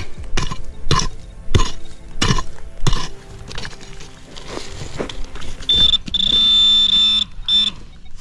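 A small hand pick chops into dry, stony soil about five times, roughly every half second. Then a handheld metal-detector pinpointer sounds a steady high buzzing tone for about a second and a half, with a short beep after it, signalling metal in the hole.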